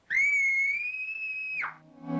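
A cartoon woman's high-pitched scream: one held note that slides up at the start, stays nearly level, and drops away about a second and a half in.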